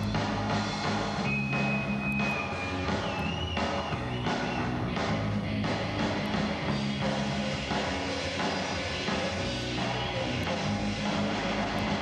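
A live rock band playing, with regular drum hits and a shifting low bass line.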